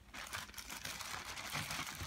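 Plastic packaging crinkling as it is handled: a continuous run of small crackles.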